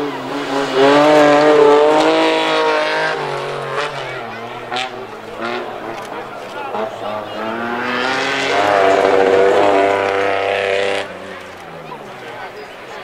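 Two classic rally cars passing close at speed on a gravel stage, one after the other. Each engine note swells and shifts in pitch as the car goes by: the first about a second in, the second from about eight seconds, cutting off sharply near the end.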